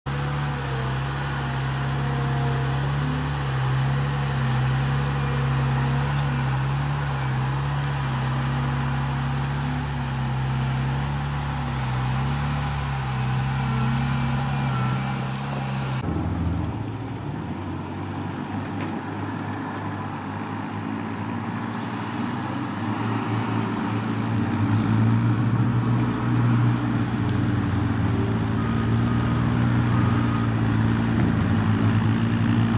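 A steady engine drone, then an abrupt cut about halfway through to an amphibious ATV's engine running as it drives through marsh water, getting louder near the end.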